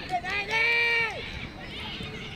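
A person shouting one long, high-pitched call at a youth football match: the pitch rises quickly, holds level for under a second, then falls away, over general touchline noise.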